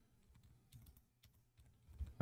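A few faint key taps on a Logitech MX wireless keyboard, coming about a second in, with near silence around them.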